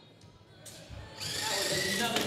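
Motor-driven intake rollers of a FIRST Robotics Competition robot spinning up to pull a ball over the bumper, a steady whirring hiss that starts faintly about halfway through and grows louder.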